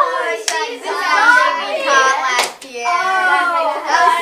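Children's voices calling out and exclaiming without clear words. Two sharp impacts stand out, about half a second in and again past the middle.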